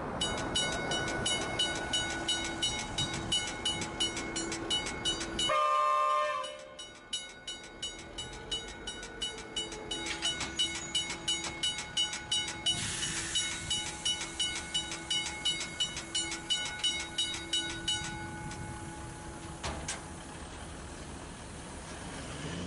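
Railway level crossing bell ringing fast, about three strikes a second. It breaks off for about a second around six seconds in, where a brief horn-like tone sounds, then resumes and stops about eighteen seconds in, leaving faint background ambience.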